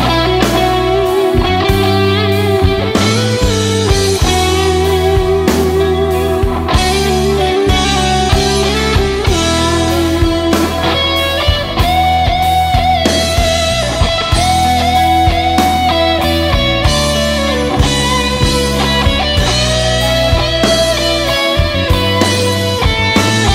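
Rock song with electric guitar: a sustained, wavering melody line over a heavy bass and a steady drum beat.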